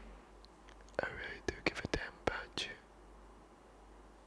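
A man whispering close to the microphone, a short burst about a second in, with several sharp clicks mixed into it.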